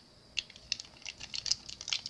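An irregular run of light clicks and ticks from small objects being handled, getting quicker and denser after about half a second.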